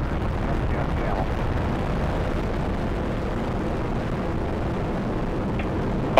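Space Shuttle Atlantis's rocket exhaust noise as it climbs seconds after liftoff, with its two solid rocket boosters and three main engines all firing: a steady, dense low rumble that holds an even level throughout.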